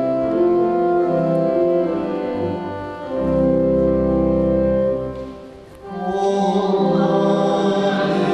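Church organ playing a hymn in steady held chords, with a deep bass note in the middle. It breaks briefly about five and a half seconds in, and then singing voices join the organ.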